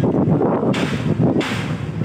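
Wind buffeting the microphone outdoors: a loud, irregular low rumble with gusty hiss rising twice.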